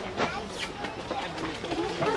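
Faint, indistinct voices of people talking in the background over a steady outdoor noise, with no single sound standing out.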